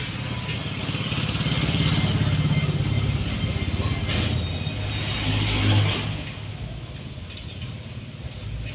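A motor vehicle's engine going by: it swells to its loudest about two seconds in, peaks again just before six seconds, then fades.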